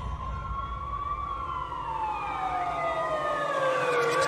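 A wailing siren sound in a music mix, its pitch sliding slowly down, over the fading low bass of the previous track, which cuts out near the end.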